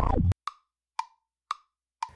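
Music cuts off abruptly a moment in, then three short, crisp clicks about half a second apart in otherwise dead silence, an edited sound effect between promos.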